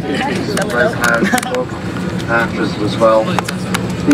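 Steady low drone of an airliner cabin, with indistinct voices talking over it.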